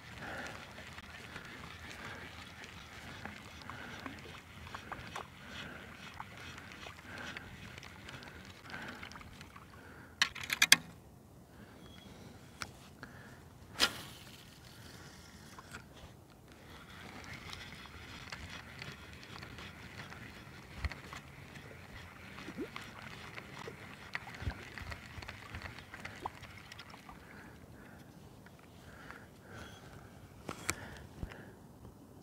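Faint lapping and small splashes of shallow water against a camera float riding at the surface, with a couple of sharp knocks about ten and fourteen seconds in.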